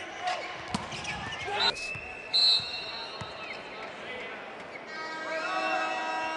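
Volleyball match sounds: sharp ball strikes and crowd voices, then a short, loud, high whistle blast about two and a half seconds in. From about five seconds in, a set of steady held musical tones comes in.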